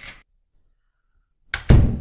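A sudden loud thud or boom about one and a half seconds in, deep and heavy, dying away over about a second. Just before it, a short noisy burst ends right at the start.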